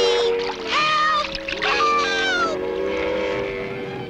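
High-pitched cartoon voices crying out, with no clear words, over background music with long held notes. The voices stop about two and a half seconds in, and the music carries on.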